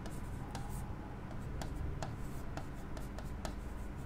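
Marker writing on a smooth board: the tip rubs and taps against the surface in short scattered strokes, over a low steady hum.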